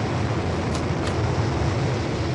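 Steady low rumble with a hiss over it, with two faint ticks about a second in.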